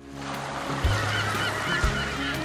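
A flock of seabirds calling, many short chirping calls at once, over a steady rushing wash and low background music.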